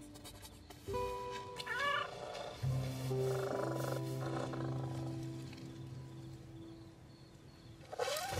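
Soft film score with long held notes, over a cartoon kitten's sounds: a short wavering mew about two seconds in, then purring as it is scratched behind the ears.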